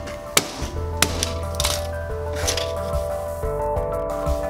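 Hammer blows crushing failed 3D-printed plastic parts on a towel-covered lead block: two sharp strikes, about half a second in and again a second in, over background music.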